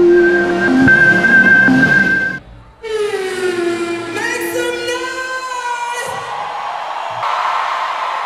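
A short electronic logo jingle of held tones cuts off about two and a half seconds in. Then live concert sound begins: a woman singing into a microphone over loud backing music, heard in a large hall.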